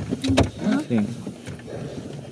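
Short bits of speech inside a car cabin, with a sharp click about half a second in.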